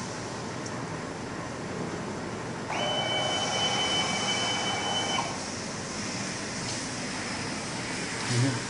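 Mini UV flatbed printer at work, with a steady machine hum. About three seconds in, a louder motor whine with a steady high tone starts abruptly and runs for about two and a half seconds while the print bed feeds forward, then stops.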